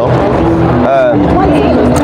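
Speech: a voice close to the microphone, with a steady low background noise underneath.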